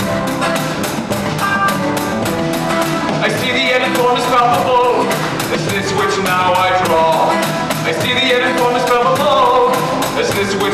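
Live rock band playing a song with a steady, fast drum beat, while a male singer sings into a handheld microphone.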